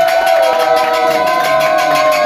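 A person's voice holding one long, loud note at a steady pitch, like a drawn-out cheer or hype call.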